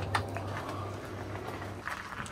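Steady low hum of an open glass-door drinks fridge, with a few faint light clicks as the door is handled.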